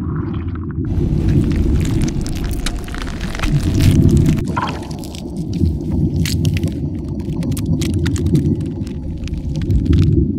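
Loud, deep rumbling sound design of an animated logo outro, with many sharp crackles over it and a swell in the middle.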